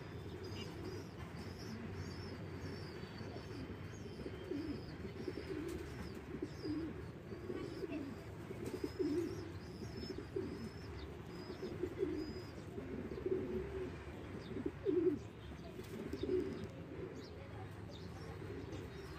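Domestic pigeons cooing, low coos coming again and again, loudest about nine and fifteen seconds in, with a run of faint high chirps over them.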